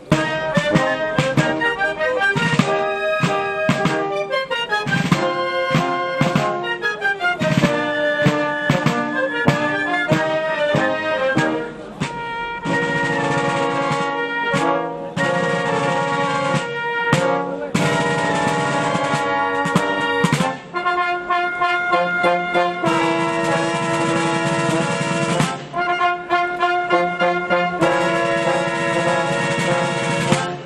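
Wind band of brass, clarinets and field drums starting a piece abruptly, with drum strokes under a quick brass melody. About twelve seconds in it moves to longer held chords.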